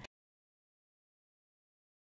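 Silence: the sound track is completely empty, with no crowd, commentary or match sound under the footage.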